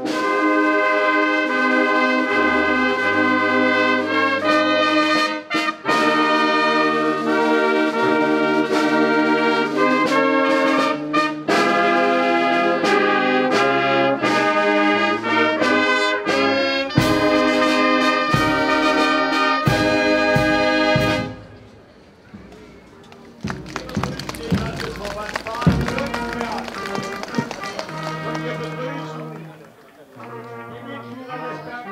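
Marching brass band with trumpets and trombones playing, with low drum beats under the tune. The band stops about two-thirds of the way through. A quieter stretch of mixed sound with scattered knocks follows.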